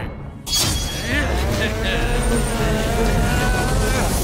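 Cartoon fight soundtrack: a sudden hit about half a second in, then a long wavering cry held for about three seconds over background music and a steady low rumble.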